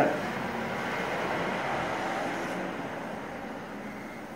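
Pencil lead of a compass scratching across paper as a circle is drawn, a steady scratchy hiss that eases off about two and a half seconds in.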